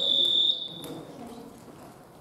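A single steady high-pitched beep lasting about a second, fading out, with a faint tap near the middle.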